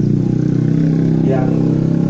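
A man speaking Indonesian into a public-address microphone over a steady low hum, with a drawn-out hesitation before a word near the end.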